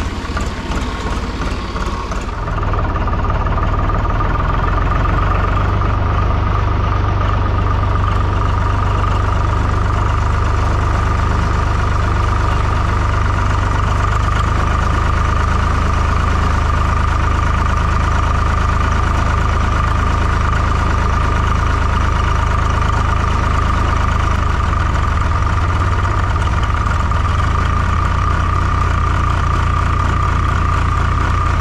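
Farm tractor's diesel engine running steadily as the tractor drives along a muddy farm track. It grows louder and closer about two seconds in, then holds an even engine note.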